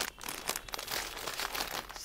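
Clear plastic bags of packed shirts crinkling as they are handled and pulled off a shelf: an irregular crackle and rustle with no single loud event.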